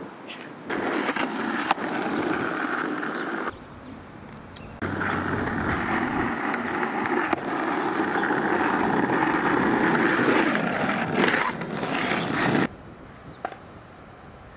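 Skateboard wheels rolling over rough asphalt in two runs: a short roll of about three seconds starting about a second in, then a longer, louder roll of about eight seconds starting about five seconds in. A sharp click sounds during the first roll.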